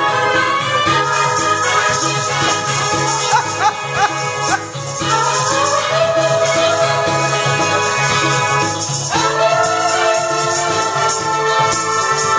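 Backing track with steady hand-percussion shaking, and a woman singing long, gliding held notes through a handheld microphone and PA; a new held note starts abruptly about nine seconds in.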